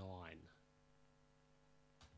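Near silence with a faint steady low hum, after a spoken word trails off in the first half second.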